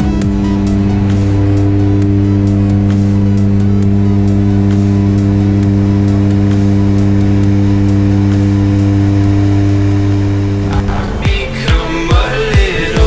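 Steady drone of a turboprop airplane's engine and propeller at climb power, an even low hum, mixed with background music. The music's beat comes back in near the end.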